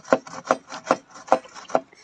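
Hand saw cutting into a small log, pushed back and forth by a small child in short strokes, about five in two seconds, each a brief scrape of the teeth on wood.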